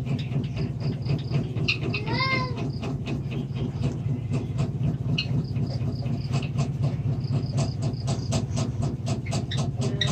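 Coloured pencil scratching back and forth on paper in quick, even strokes over a steady low hum. About two seconds in comes one short call that rises and falls in pitch.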